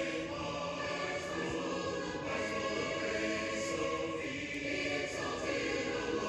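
Congregation singing a hymn a cappella, many voices holding slow, sustained notes that change about once a second.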